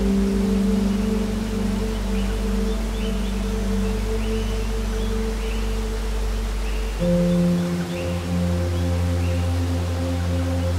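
Background music of slow, held chords, changing to a new chord about seven seconds in.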